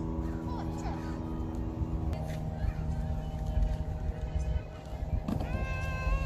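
Children's voices, with one child's long, wavering call near the end, over a steady low rumble and held tones that shift in pitch about two seconds in.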